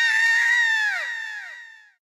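A high-pitched, drawn-out cartoon cry, held for over a second, then falling in pitch and fading away.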